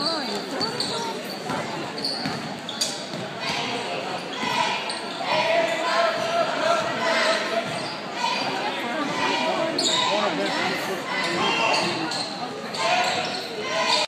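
Basketball dribbling on a hardwood gym floor amid overlapping chatter and shouts from players and spectators, echoing in a large gymnasium.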